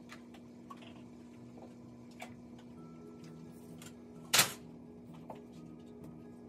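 Light clicks and taps of plastic baby bottles and their parts being handled at a kitchen counter and sink, with one loud clatter about four and a half seconds in, over a steady low hum.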